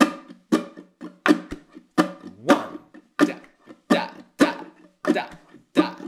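Ukulele played with the eight-stroke rumba flamenco strum at a quicker tempo, sharp strum strokes about twice a second, with harder accented strokes on one, four and seven of the pattern.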